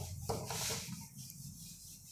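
Whiteboard eraser rubbing across a whiteboard as writing is wiped off. The rubbing is strongest in the first second and then fades.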